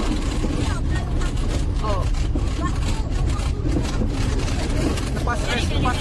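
Car driving on an unpaved dirt road, heard from inside the cabin: a steady low rumble of engine and tyres on the rough surface.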